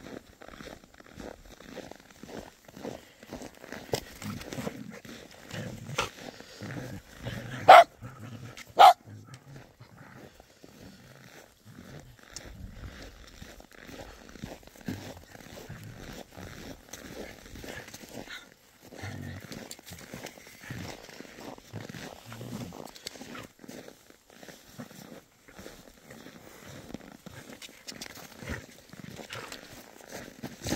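Shetland sheepdog barking a few times in short, sharp barks, the two loudest close together about eight and nine seconds in, with softer low sounds scattered between.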